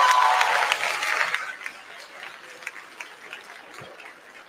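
Audience applauding, loud at first, then dying away about a second and a half in to a few scattered claps.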